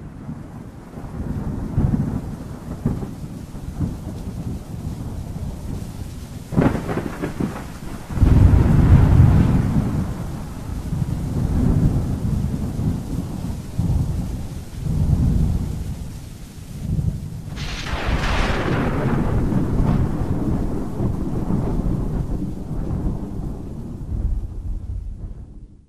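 Thunderstorm: continuous rain with rolling thunder, a sharp crack about six seconds in followed by the loudest rumble, and another crack about three-quarters of the way through.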